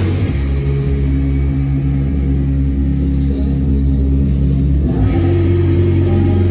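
The live band's drums drop out at the start, leaving a loud, low, sustained drone of held notes from its amplified instruments with no beat. The held notes change to a new set about five seconds in.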